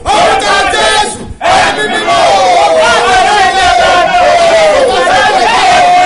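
A man and a woman praying aloud at the same time, loud and fervent, their voices overlapping. One voice holds a long drawn-out cry through the middle, after a brief drop about a second in.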